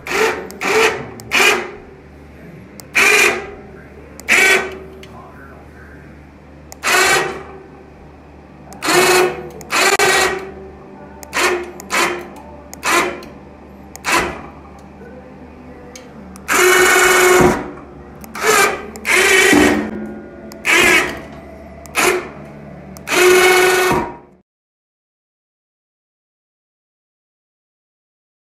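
Electric winch motor fitted to a Cub Cadet 106 garden tractor, switched on and off in about eighteen short whining bursts, the longest just over a second, as it works the snow plow lift. The sound stops abruptly about two seconds before the end.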